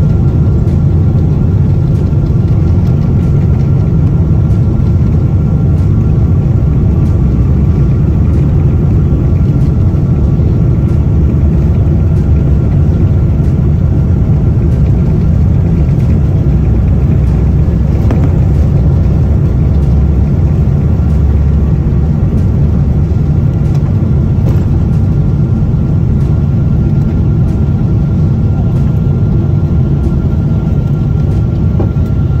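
Jet airliner's underwing turbofan engines at takeoff power, heard from inside the cabin: a loud, steady, deep rumble with a thin steady whine above it through the takeoff roll and lift-off.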